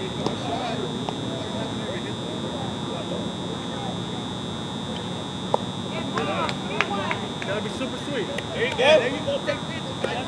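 Indistinct shouts and chatter from softball players across the field, louder in the second half, over a steady high-pitched whine. There are a few faint sharp clicks.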